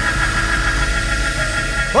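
Church worship accompaniment holding a sustained keyboard chord over a steady low bass note between sung phrases; a singing voice comes back in right at the end.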